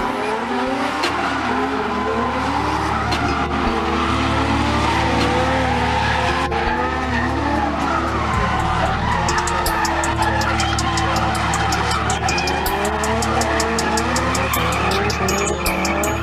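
Drift car engines revving up and down, with tyres squealing as the cars slide sideways. Music with a steady beat runs underneath.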